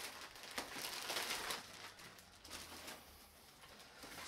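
Clear plastic bags crinkling and rustling as they are handled, loudest in the first second and a half, then fading to faint rustles.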